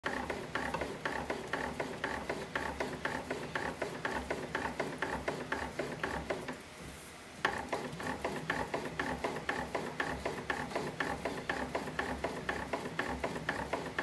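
Hand-operated bat-rolling machine clicking rapidly and evenly, about four to five clicks a second, as a composite softball bat is rolled under pressure to break it in. The clicking stops for about a second midway, then resumes.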